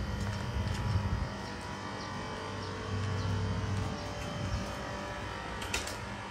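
Outdoor background ambience: a low rumble that swells twice, under a faint even hiss with a few light clicks.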